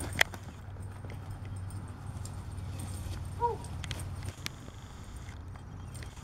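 A dog's paws thudding over grass as it runs and turns, over a low steady rumble. There is a sharp click just after the start and a short falling call about three and a half seconds in.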